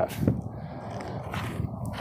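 Faint scraping of a leather-gloved hand rubbing across dry, stony dirt, breaking loose small rocks, with a few light clicks of stones.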